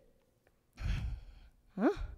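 A woman's short, sigh-like exhale about a second in, while she shifts her position on a yoga mat, followed near the end by a short questioning "hein?" with rising pitch.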